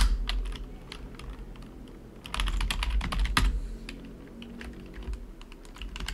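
Keystrokes on a computer keyboard: a sharp key click at the start, scattered taps, then a quick flurry of typing about two to three and a half seconds in.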